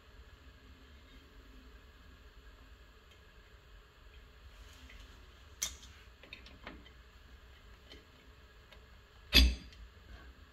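Small metallic clicks and ticks from handling drum-brake shoe hold-down hardware (retaining pin and spring) at the brake backing plate, with one sharp, loud click a little before the end.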